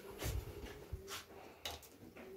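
Faint handling noise as a metal hose clamp is turned over in the hand: three soft knocks and rustles.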